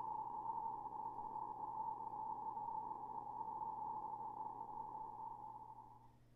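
A steady, sonar-like ringing tone used as the sound effect for Byakugan x-ray vision, held for several seconds over a faint low hum and fading out near the end.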